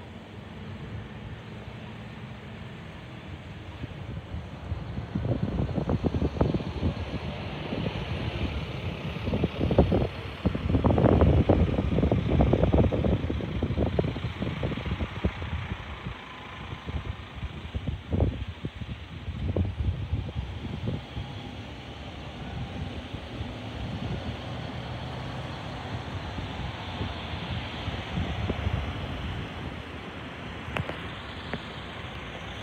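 Wind buffeting the microphone in irregular gusts, strongest about ten to thirteen seconds in and again around eighteen to twenty seconds, over a steady background rumble.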